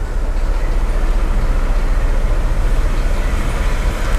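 A loud, steady rumbling noise with a fine rattling texture, strongest at the low end.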